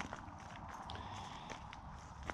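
Faint footsteps: a few scattered soft scuffs and clicks over a quiet outdoor background.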